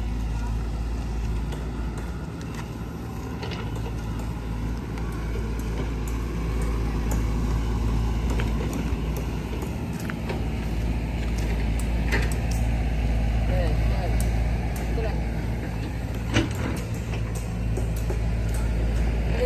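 An engine running steadily as a low drone, typical of construction machinery such as an excavator. Scattered crunching steps on gravel and one sharp knock come near the end.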